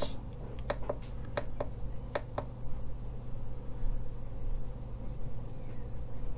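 A few light clicks in the first couple of seconds as the bench power supply's current control is turned up, over a steady low hum.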